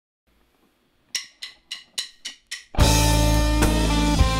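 Six quick, evenly spaced clicks counting the band in, about three and a half a second, then the full rock band comes in loudly just before the end: electric guitars, bass guitar and drum kit.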